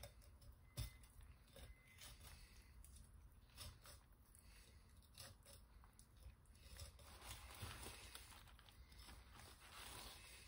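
Faint, irregular cuts and scrapes of a knife working through a striped bass as it is filleted, with a sharper click about a second in.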